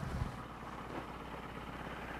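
Low, steady hum of a fishing boat's outboard motor idling.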